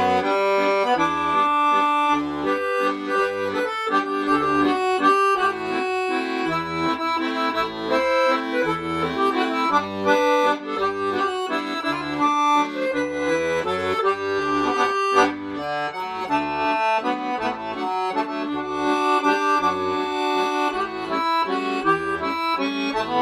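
Solo piano accordion playing a waltz: a quick-moving melody over low bass notes that recur beneath it.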